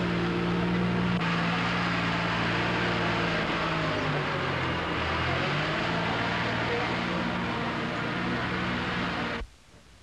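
An engine running steadily over a noisy haze, its pitch dipping briefly about four to five seconds in; the sound cuts off suddenly just before the end.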